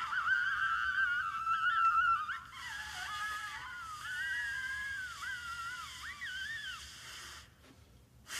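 Free-improvised music from a saxophone and percussion duo: high, wavering squealing tones that bend and glide, with a breathy hiss above them. The tones break off near the end.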